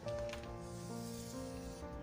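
Soft background music with sustained notes, under the faint hiss of a felt-tip marker drawn along a ruler across paper, starting about half a second in and lasting a little over a second.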